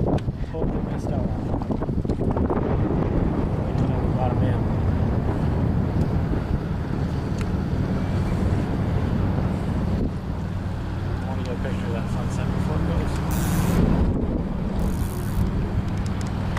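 A small boat's motor running steadily, with wind buffeting the microphone and water rushing along the hull.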